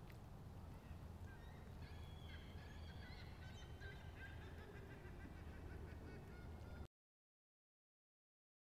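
Faint outdoor nature ambience: birds calling in short, repeated notes over a steady low rumble. The sound cuts off abruptly about seven seconds in.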